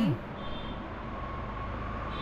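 The end of a spoken word, then a steady low background rumble with a faint steady hum.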